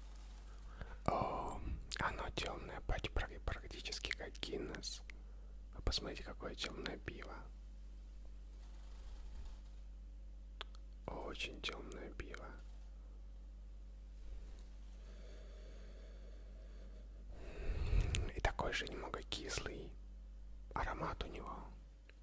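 Soft whispering close to the microphone, in several short bursts with quiet pauses between them.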